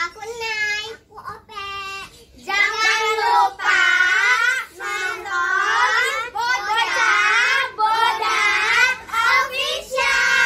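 A group of young girls singing together, with a few short phrases at first and all of them joining in louder from about two and a half seconds in, holding notes.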